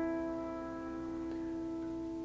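A piano holding an A minor chord (A, C and E), ringing and slowly fading. No new notes are struck.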